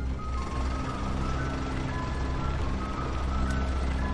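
Ice cream van running, a low engine rumble under its jingle, a simple high tune of single notes.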